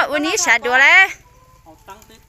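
A rooster crowing once: a loud, high call that starts with a rising pitch and stops about a second in.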